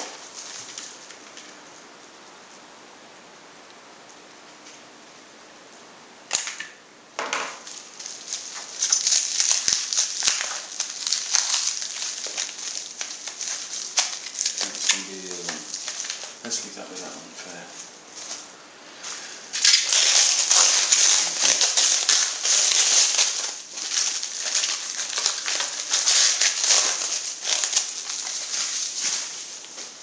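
Plastic film wrapping crinkling and tearing as it is pulled off a small package by hand: quiet at first, a sharp crack about six seconds in, then irregular bursts of crackling, busiest in the last third.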